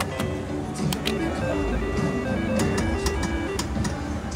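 A three-reel slot machine spinning, its reels clicking to a stop, under background music.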